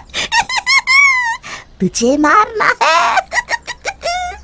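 A cartoon witch's loud, high-pitched cackling laugh: a quick run of ha-ha bursts, then a second longer peal about two seconds in.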